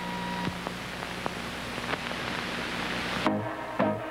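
Steady hiss with a low hum and a few faint clicks from an old broadcast videotape, then about three seconds in an abrupt cut to a commercial jingle with music and singing.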